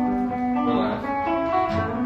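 Acoustic guitar and electric guitar playing together, held notes ringing over each other, with a strummed chord near the end.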